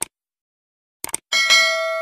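Sound effect of a subscribe-button animation: a mouse click at the start, a quick double click about a second in, then a notification-bell ding that rings on and slowly fades.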